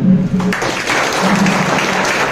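Audience applauding, the clapping starting about half a second in after a man's voice and continuing steadily.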